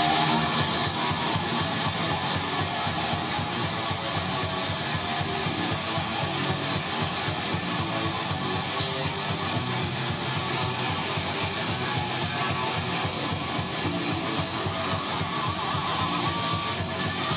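Live thrash metal band playing at full volume: distorted electric guitars riffing fast over drums, dense and unbroken throughout.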